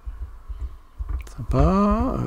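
Uneven low, dull thumps, then near the end a short man's hum, a wordless 'hmm' that rises in pitch and holds.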